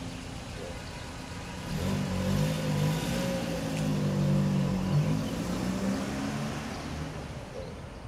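A motor vehicle's engine passing by out of view, growing louder about two seconds in and fading away again near the end.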